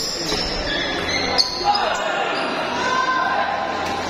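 Table tennis rally: the celluloid ball clicks off rubber paddles and the table a few times, the sharpest hit about a second and a half in, echoing in a large hall.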